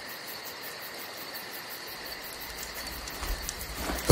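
Steady insect ambience with a high chirring, joined by a low rumble about halfway through.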